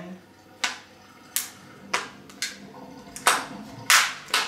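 Metal skewer punching holes in a thin clear plastic food-tub lid: a series of about six sharp clicking pops as the point breaks through the plastic, the last two near the end the loudest.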